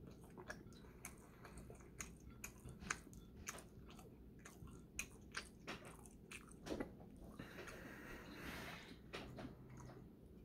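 A person chewing food close to the microphone, a steady string of small mouth clicks throughout.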